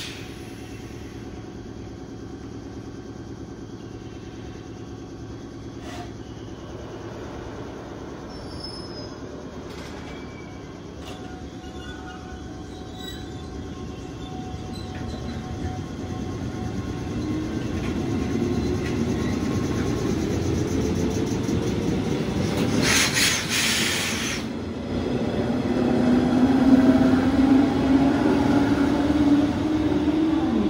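A four-car JR West 105 series electric train pulling away from a standstill. A low steady hum at first, then, from about halfway, traction motor whine rising in pitch and growing louder as it gathers speed, with wheel noise on the rails. A brief high-pitched burst, like a wheel squeal, comes about three-quarters of the way through.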